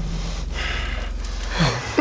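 Breathy laughter and exhaling over a steady low hum, with a short voiced laugh near the end.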